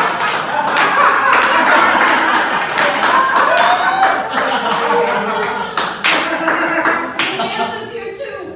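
Scattered clapping from a small audience, with voices mixed in; the claps thin out near the end.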